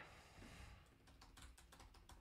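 Faint computer-keyboard typing: a run of quick keystroke clicks, most of them in the second half.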